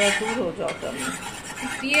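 A flat metal spatula scraping and pushing butter around a non-stick frying pan, loudest about the first half second.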